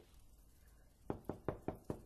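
Knocking on a door: five quick, even raps about a second in, about five a second.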